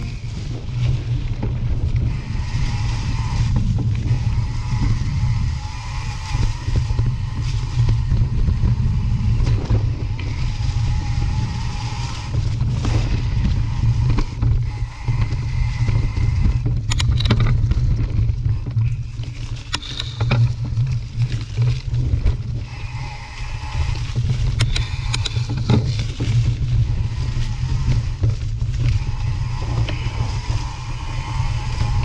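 Mountain bike ride noise picked up by a mounted action camera: a steady low wind rumble on the microphone, with scattered clicks and rattles as the bike goes over bumps on a leaf-covered dirt trail.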